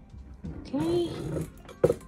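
A woman's short wordless voice sound, its pitch rising then falling, followed by a sharp knock near the end.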